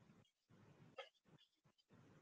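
Near silence: room tone, broken by one faint, very short sound about a second in.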